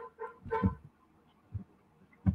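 A man's short, faint voice sounds in the first second, then a single soft low thump about one and a half seconds in.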